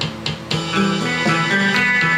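Ibanez electric guitar playing a picked rhythm part in E standard tuning. The level drops briefly just after the start, then a new phrase of lower ringing notes begins about half a second in.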